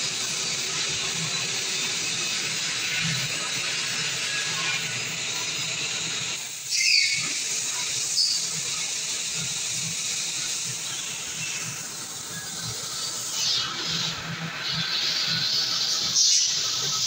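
CNC fiber laser cutting machine cutting sheet metal, making a steady hiss. Two brief louder bursts come about seven and eight seconds in.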